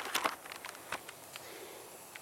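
Wood fire crackling in a StoveTec rocket stove, with faint, irregular pops and ticks from rain-soaked sticks burning and drying out.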